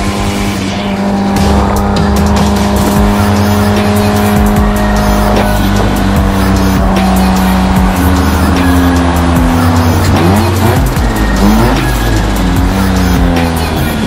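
Nissan 180SX drift car's engine revving and tyres squealing, mixed with a music track of long held tones. The engine note rises and falls repeatedly in the second half.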